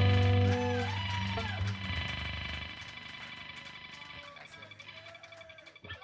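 A rock band's closing chord on electric guitar and bass ringing out and fading away over several seconds at the end of a song, with a few brief voices calling out as it dies down.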